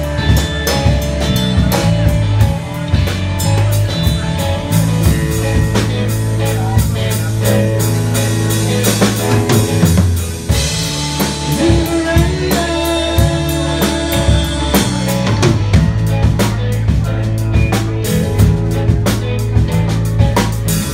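Live rock band playing: drum kit, electric guitar and bass guitar, with a brief dip in loudness about halfway.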